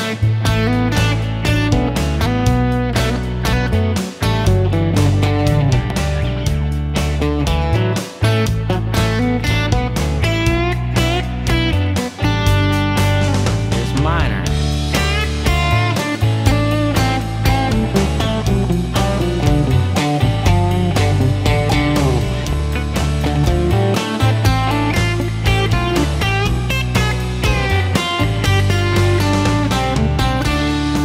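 Telecaster-style electric guitar playing single-note lines in D pentatonic over a backing jam track of bass and drums, walking up D major pentatonic and then moving into D minor pentatonic licks with string bends. The backing's low end drops out for a moment about every four seconds.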